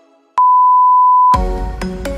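Interval timer's long end-of-interval beep: one steady high tone held for about a second, marking the end of a work set and the start of the rest. Electronic workout music starts back in right after it.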